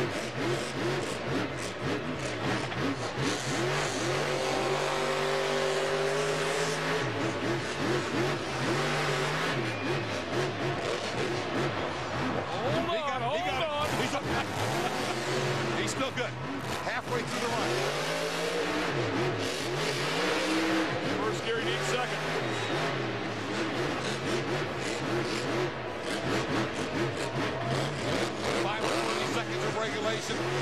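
Grave Digger monster truck's supercharged V8 engine revving hard through a freestyle run, its pitch climbing and dropping again and again as the truck accelerates, jumps and slides in the dirt.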